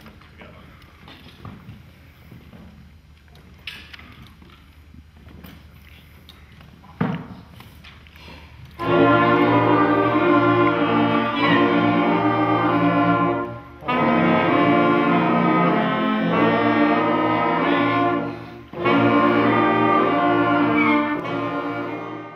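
A beginner school wind band of woodwind and brass instruments playing sustained chords together, coming in about nine seconds in after a quiet stretch. The band holds three long phrases, with short breaks between them.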